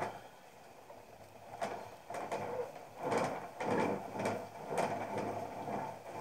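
Short scraping and rubbing strokes of a rib or fingers along the inside wall of a soft hand-built clay pot as it is smoothed, starting about a second and a half in, several strokes in a row.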